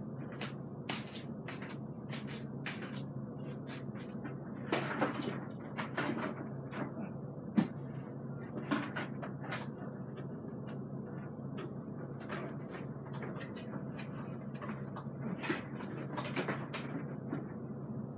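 Scattered light clicks and knocks of things being handled, a few louder ones in the first half, over a faint steady low hum.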